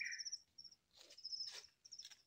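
Crickets chirping in high-pitched trains of rapid, even pulses, with a short pause about halfway through.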